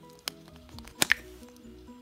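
Plastic clicks as the cap of a small plastic stamper is pulled open: one sharp click about a quarter second in and a louder double click about a second in, over soft background music.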